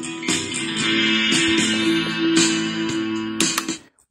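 Strummed guitar music playing from a USB flash drive through the built-in speaker of a Prunus J-160 retro radio. It stops abruptly just before the end as playback is paused.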